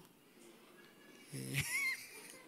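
A short pause, then, about one and a half seconds in, one brief voiced sound from a person's voice, a short vocal noise rather than clear words.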